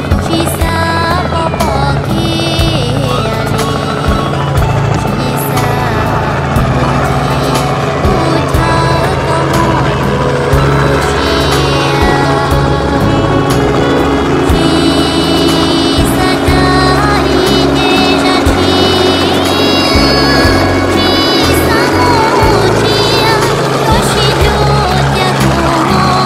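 Music playing over a Robinson R44 piston helicopter's engine and rotor as it flies close by.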